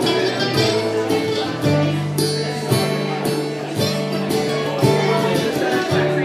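Live acoustic guitar music, two guitars playing an instrumental passage: strummed steel-string acoustic guitar with a second guitar holding sustained notes, with fresh notes picked about every half second.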